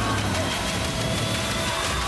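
A car engine runs with a low, steady rumble, layered under tense music, while a man yells.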